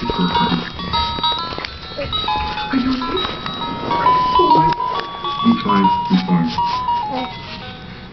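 A simple electronic tune of single beeping notes stepping up and down, like a baby activity gym's toy melody, with short vocal sounds underneath.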